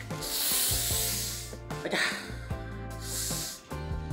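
A man blowing out two long, hissy breaths: one right at the start lasting over a second, a shorter one about three seconds in. He is puffing from arm fatigue after spinning the wrist trainer. Background music runs underneath.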